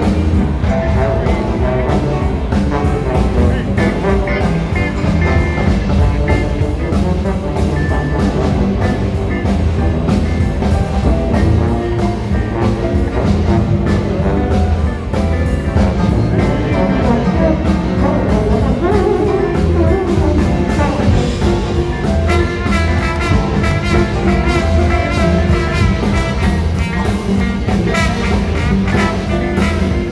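Live blues band playing at full volume over a steady drum beat, with electric guitar to the fore and a horn section joining strongly in the latter part.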